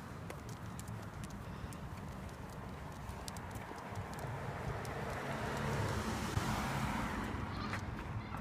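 Outdoor walking noise: light footsteps of a person and a dog on pavement over a steady rumble of wind on the microphone. In the second half a passing vehicle's noise swells and then fades.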